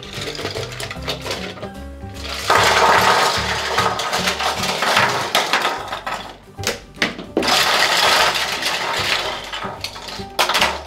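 A pile of small die-cast toy cars pours out of a large plastic egg and clatters onto a wooden tabletop in a long rattling rush about two and a half seconds in. A second burst of clatter comes near the end as the cars are spread around, all over background music.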